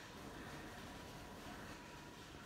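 Faint steady whir of a freshly powered-up bench PC, its CPU cooler fan and other fans running, with a thin steady high tone under it.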